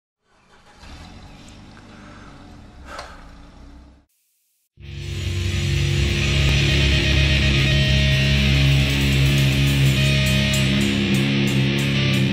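Heavy metal band sound, mostly guitar: a quieter held drone for about four seconds, a brief cut to silence, then a loud sustained guitar chord ringing on with steady held notes.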